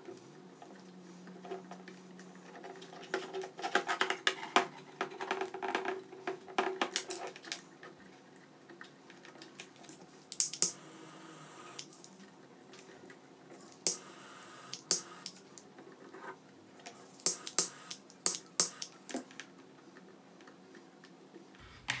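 Hands handling and twisting electrical wires and a power cable on a desk: soft rustling and scattered light clicks, with a few sharper clicks in the second half, over a faint steady hum.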